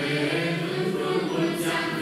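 Choir singing: several voices together holding long, slow notes, with a sung 's' hissing briefly about one and a half seconds in.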